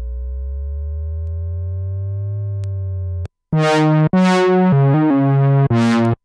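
Cherry Audio Minimode software synthesizer, an emulation of the Minimoog, playing presets: a held low bass note with a slow upward sweep in its tone, cut off just after three seconds, then a string of short, bright notes played on the keyboard.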